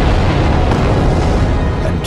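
Loud, steady low rumble of a volcanic eruption, with music underneath.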